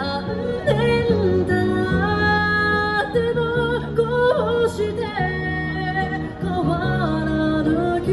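A female singer singing into a microphone, amplified through a portable street speaker, over instrumental accompaniment. She sings long held notes with slides between them, over steady chords that change every second or two.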